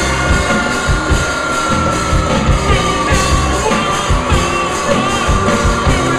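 Post-punk band playing loud live rock: drum kit, electric guitar and vocals, with a long held high note that sinks slightly in pitch about halfway through and then holds steady.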